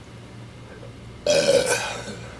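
A man's loud burp, brought up by a swig of carbonated malt liquor from a 40-ounce bottle. A single burp comes about a second and a quarter in and lasts just over half a second.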